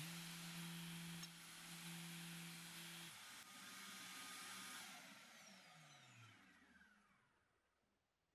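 DeWalt random orbit sander sanding a small metal plate pressed against its pad. The plate comes off about three seconds in and the sander runs free for a moment, then is switched off and winds down with a falling pitch over the last few seconds.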